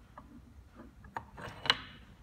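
A few light mechanical clicks and taps from handling a DLP 3D printer's aluminium build-platform arm and its star-shaped clamp knob. The sharpest click comes near the end.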